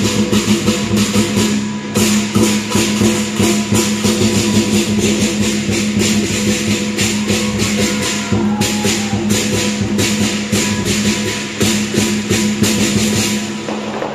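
Live southern lion dance percussion: a big drum with fast, steady clashing cymbals and gong, playing without a break until a short pause near the end.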